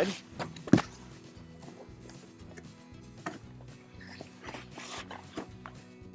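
A cardboard appliance box being handled and tipped onto its side: a sharp knock under a second in, a smaller one about three seconds in, and light scuffs, over quiet background music.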